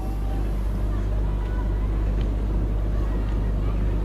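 A steady low motor rumble, without change.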